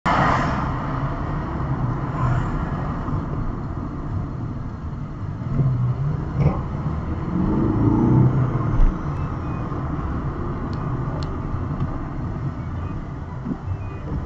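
Car engine and road rumble heard from inside the cabin while driving slowly, a steady low drone whose pitch rises and falls once around the middle.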